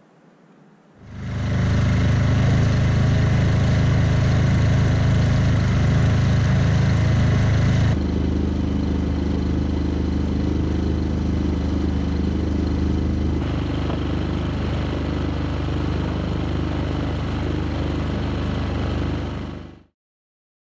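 Small outboard motor on an inflatable dinghy running steadily, coming in suddenly about a second in. Its tone drops and thins about eight seconds in, then it keeps running until it fades out just before the end.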